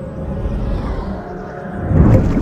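Cinematic logo-intro sound effect: a low rumble with faint held tones that swells, building near the end toward a hit.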